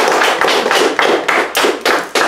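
Audience applause thinning out into scattered individual hand claps, dying away near the end.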